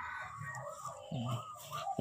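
A rooster crowing faintly, a wavering call that is strongest in the second half.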